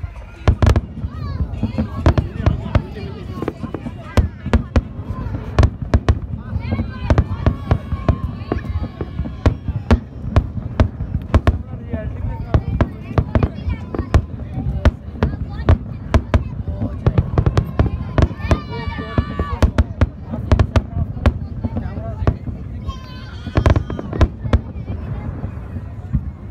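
Aerial fireworks display going off in a rapid, continuous barrage: many sharp bangs a second over a steady low rumble of bursts. People's voices are heard now and then over it.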